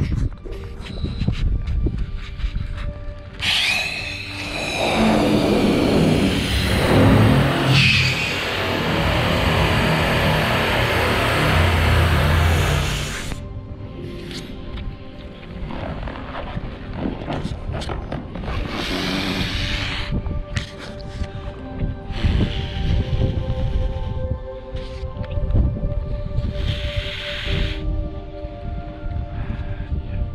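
Helium gas hissing out of a small cylinder's valve into a large party balloon. There is a long hiss from about four seconds in that cuts off suddenly near thirteen seconds, then shorter hisses, all over steady background music.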